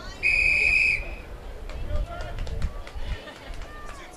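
Referee's whistle: one long steady blast, just under a second, the signal calling the swimmers up onto the starting blocks. Background talk follows.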